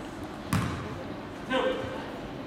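A basketball bounces once on a hardwood gym floor about half a second in. A short voice call follows about a second later, over the murmur of the gym.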